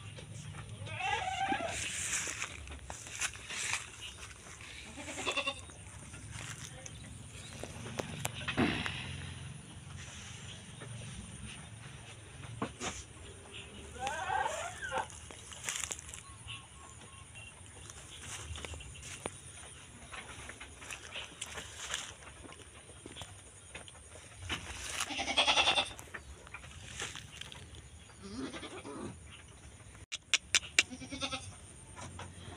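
Goats bleating: about five quavering calls spread out, the loudest a little before the end. Scattered small clicks and knocks fall between the calls.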